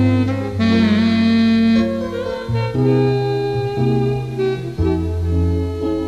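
Instrumental film-score music: a lead melody that wavers in pitch about a second in, over a slow-moving bass line.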